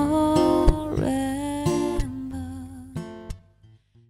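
Acoustic guitar strummed under a woman's long sung note. The music winds down and stops about three seconds in.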